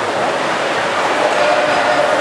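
Steady, loud crowd noise from an audience, echoing in a large hall.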